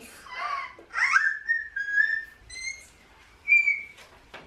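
High-pitched whistling: a note that slides up into a held tone, then two shorter, slightly higher notes.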